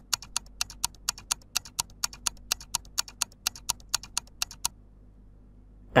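Countdown-timer ticking sound effect: rapid, evenly spaced ticks, about four a second, that stop about a second before the answer time ends.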